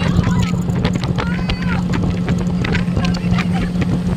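Speedboat motor running steadily at speed, a continuous low hum under a rumble of water and wind, with voices over it.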